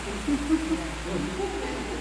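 Soft, low-pitched chuckling: short hooting voice sounds well below speaking level.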